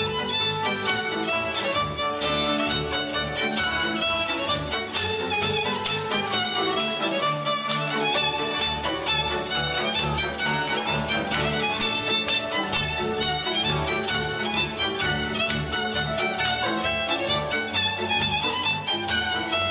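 A Hungarian folk string band playing a Rábaköz dus dance tune live. A fiddle leads over cimbalom and double bass, with a steady pulsing beat in the bass.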